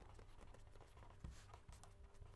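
Faint scratching of a pen writing on paper in short strokes, over near silence.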